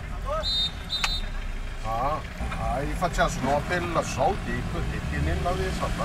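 Steady low engine and road rumble of a small car, heard from inside the cabin as it drives, with a man's voice talking over it.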